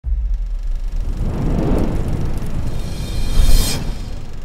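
Cinematic logo-reveal sound effect: a deep rumble under a swelling rise that peaks in a bright whoosh about three and a half seconds in, then falls away.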